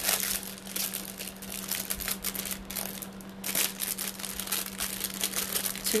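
Crinkling and rustling of an earring display card and paper number tag being handled close to the microphone: an irregular run of scratchy rustles, with a steady low hum underneath.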